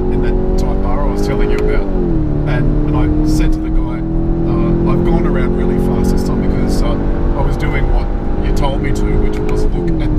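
Skoda Octavia RS 245's turbocharged four-cylinder engine heard from inside the cabin, pulling hard with its note climbing steadily. About two seconds in the pitch drops sharply as it shifts up a gear, then climbs slowly again and drops with another upshift at the very end.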